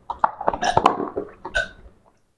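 A person gulping down water from a glass, a quick string of short, irregular throat sounds.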